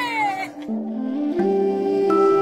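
A woman's high-pitched laughing cry, falling in pitch and over within half a second, then soft music of held notes stepping from one pitch to the next comes in and builds.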